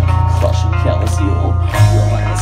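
Heavy metal band playing live: guitar and bass hold a loud, heavy low note under drums with repeated cymbal hits, the low note changing just before the end.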